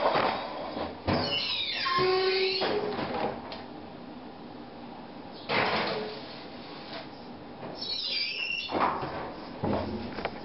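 An oven door being opened and shut. The hinge creaks open with a long squeak that falls in pitch, a pan scrapes onto the rack, and the door creaks shut with another falling squeak and a thump near the end.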